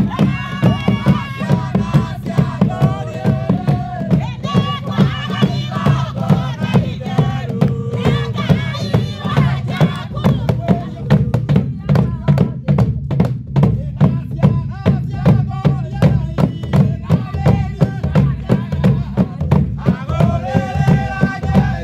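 A group of voices singing a kigooco hymn over a steady beat of large hand-held frame drums struck with sticks. The singing thins out for a few seconds around the middle, leaving mainly the drum strokes, then comes back.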